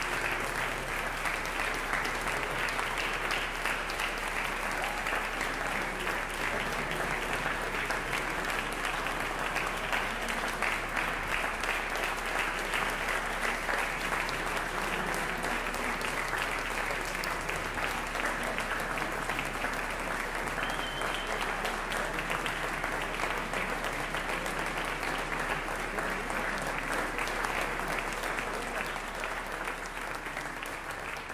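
Concert hall audience applauding, a dense, even clapping that holds steady and eases slightly near the end.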